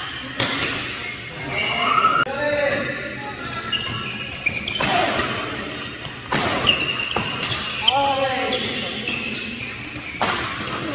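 Badminton doubles rally in a large hall: sharp cracks of rackets hitting the shuttlecock, with the hardest hits around two thirds of the way through, and short high squeaks of court shoes on the mat between the shots.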